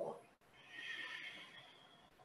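A woman's audible exhale through the mouth, a soft breathy rush of about a second and a half that swells and then fades.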